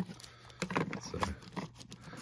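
A stack of Pokémon trading cards in plastic sleeves being handled and squared by hand, with light irregular clicks and the rustle of the plastic sleeves.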